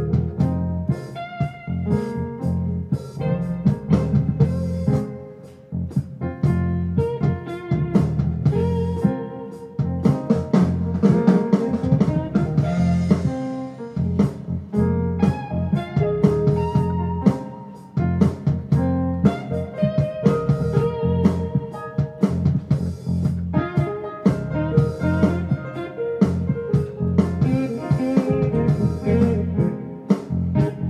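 Funky full-band jam played on an 88-key synthesizer keyboard: guitar-like plucked parts over bass and drums, with short, sharply struck notes and chords.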